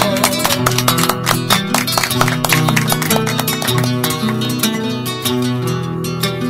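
Acoustic guitar playing alone between the sung verses of a payada: plucked bass notes and strummed chords in a steady rhythm.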